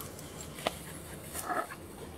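A dog coming out through dry brush: faint rustling, a single sharp snap about two-thirds of a second in, and a short brief noise about a second and a half in.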